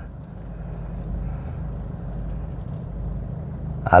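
An SUV's engine running at low revs with a steady low hum as the vehicle reverses slowly.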